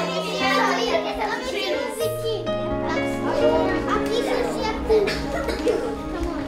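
A room full of children chattering over music with long held notes that change pitch every second or so.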